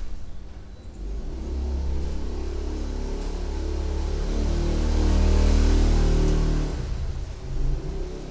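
A low engine rumble, as of a vehicle going past, that builds over several seconds, is loudest about five to six seconds in, and fades out shortly before the end.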